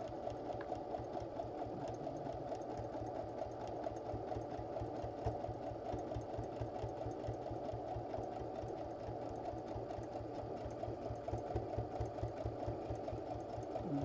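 Electric sewing machine running steadily on a straight stitch, the needle going up and down in a fast, even rhythm as it sews a long seam through two layers of fabric.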